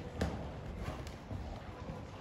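Hoofbeats of a Westphalian mare cantering on the sand footing of an indoor arena: dull, irregular thuds, with one sharper click a moment in.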